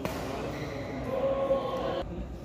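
Badminton doubles rally on an indoor court: racket strikes on the shuttlecock and players' footsteps, with a voice calling out in a held tone about a second in and a sharp hit near the end.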